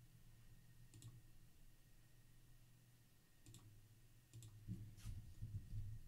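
A few faint computer mouse clicks, two of them in quick pairs, over a low steady hum.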